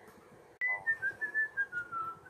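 A sharp click about half a second in, then a person whistling a clear tune of several held notes that step gradually downward in pitch.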